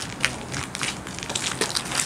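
Footsteps crunching and scuffing on a gritty concrete sidewalk, a string of irregular short steps as people walk past close by.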